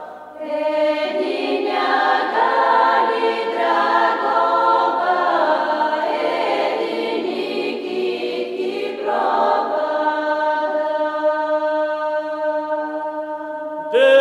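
A Bulgarian women's choir singing a folk song a cappella in close, several-part harmony, with a brief break for breath at the very start before the voices come back in.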